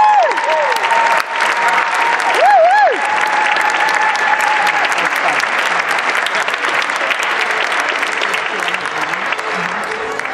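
Audience applauding steadily, with a few high, swooping calls from the crowd in the first three seconds.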